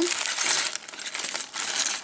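Clear plastic bag crinkling as it is handled and opened, with the metal ring bases inside clinking against each other; loudest in the first second, then softer rustling.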